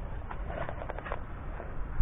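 Outdoor street ambience in falling snow: a steady low rumble with a few short clicks and rustles around the middle.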